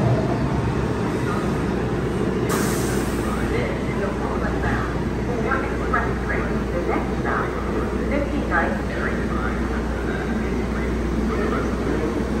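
An R142-series New York City Subway train standing at the platform with its doors open, a steady low hum from the car, a short hiss of air about two and a half seconds in, and indistinct voices over it.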